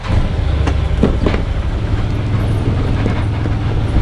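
Can-Am side-by-side's engine, just started with the key, running with a steady low rumble, with a couple of short knocks about a second in.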